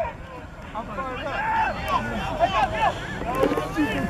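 Several voices shouting over one another around a rugby ruck, with wind rumbling on the microphone.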